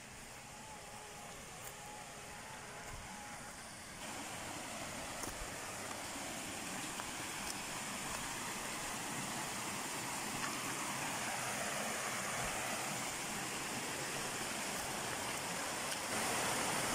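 Stream water running over rocks, a steady rushing hiss that grows louder from about four seconds in as the water comes closer.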